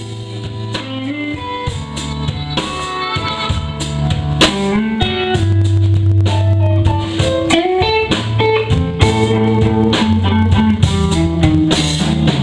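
Blues band playing live without vocals: an electric guitar leads over bass and drum kit, growing louder over the first few seconds.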